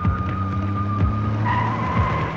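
A police jeep driving and swinging round, its engine running and tyres skidding, over background music with a steady beat.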